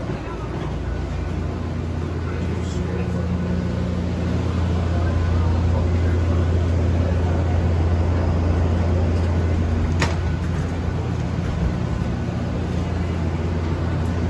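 Steady low drone of the parked airliner and its jet-bridge equipment at the aircraft door, getting louder partway through, with a single sharp click about ten seconds in.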